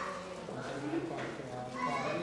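Indistinct voices of people talking, no words clearly made out.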